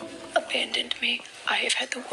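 A young woman speaking quietly, in short broken fragments, with the background music dropped out.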